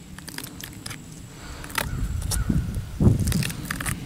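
Knife blade cutting down through a block of ballistics gel, with irregular crackling clicks that grow louder in the second half.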